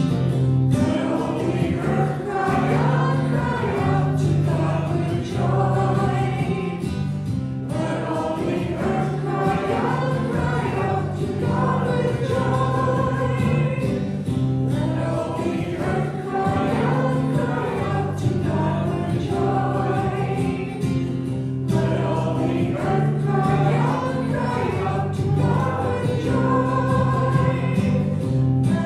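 Church music: voices singing a sacred song in phrases over sustained instrumental accompaniment.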